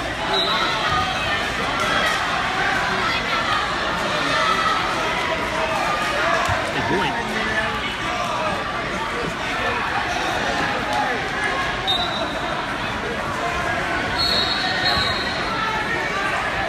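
Crowd chatter and voices echoing in a large gymnasium during a wrestling meet, with occasional dull thuds. A few short, high whistle blasts come through: one just after the start, one about 12 seconds in and a longer one about 14 seconds in.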